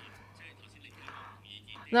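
A short lull in a meeting room's microphone feed: faint, indistinct voices and a steady low electrical hum, with clear speech starting right at the end.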